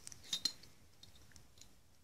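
A few faint, light metallic clicks from a cam ring being turned by hand around a Lucas K2F magneto's advance mechanism, mostly in the first half second, then fainter ones.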